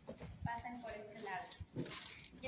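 Indistinct talking from a few people, too faint and unclear to make out words.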